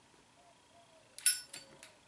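A match struck to light a tobacco pipe: a short, sharp scratch and flare about a second in, followed by two fainter clicks.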